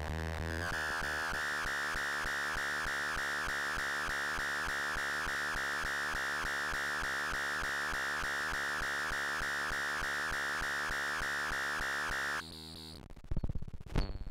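Electronic synthesizer sound from a eurorack modular system: a steady buzzing tone with a strong high band and a rapid, even pulse. It cuts off suddenly near the end, and a few light knocks follow.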